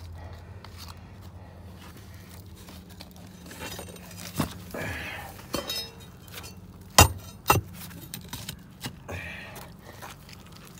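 Gritty scraping and clinking as debris is picked from a crumbling concrete septic distribution box, with scattered knocks, the loudest two about seven seconds in, over a steady low hum.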